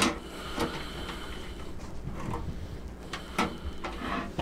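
Small cardboard accessory box being worked out from the bottom of a Fractal Design Focus G PC case: a few scattered knocks and scrapes against the case, with a sharp click right at the start.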